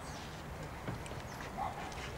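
Small rowboat being rowed: a few short, separate knocks and squeaks from the oars working in their oarlocks, over a low steady background noise.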